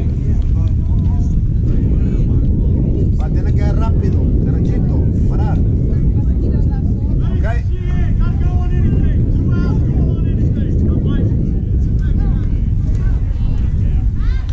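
Voices of players and spectators calling out across a youth baseball field, with a cluster of shouts about halfway through, over a steady loud low rumble.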